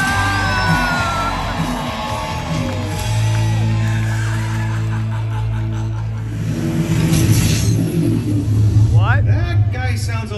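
Dramatic show music played loud over a deck sound system, built on a held deep bass note. Voices call out over it in the first second or so and again near the end.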